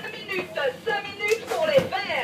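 Indistinct talking: a person's voice speaking in short phrases, no words clear.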